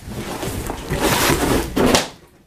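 Flannel blanket rustling loudly as it is pulled off a covered heater, building up and stopping abruptly at the end.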